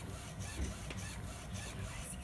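UV flatbed printer running, its print carriage with the curing lamp moving back and forth over the bed, making a mechanical sound that repeats about twice a second.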